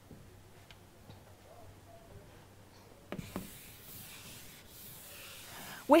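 Chalk writing on a chalkboard: a light tap of the chalk meeting the board about halfway through, then faint, continuous rubbing strokes.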